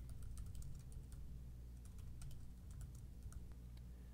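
Typing on a computer keyboard: faint, irregular keystrokes while a form is filled in.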